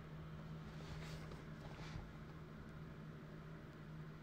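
Quiet indoor room tone: a faint steady low hum, with two soft brief rustles about one and two seconds in.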